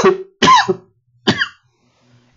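A man coughing three times in quick succession, each cough short and loud.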